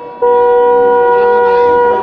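A horn blown in one long, steady, unwavering note that starts just after the beginning and is held for nearly two seconds, over faint crowd voices.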